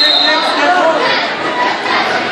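Many overlapping voices chattering in a gymnasium, no single voice clear.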